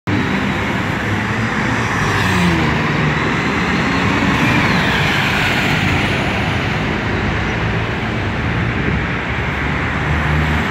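Street traffic with city buses passing close: a steady, loud engine rumble and tyre noise, with a whine falling in pitch about five seconds in.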